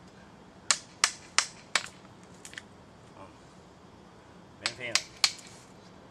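Old hand tools striking a wooden log being carved into a sculpture. Four sharp strikes come about a third of a second apart, then two lighter taps and a pause, and three more strikes near the end.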